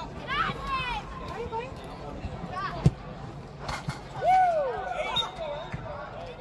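Youth soccer players shouting and calling out during play, with one sharp thud of a soccer ball being kicked a little under three seconds in, the loudest sound in the stretch. A louder rising-and-falling shout follows about a second later.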